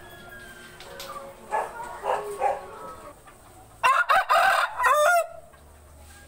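A rooster crowing once in the second half, a single loud call of about a second and a half made of several linked notes that ends in a falling note, after three short calls a little earlier.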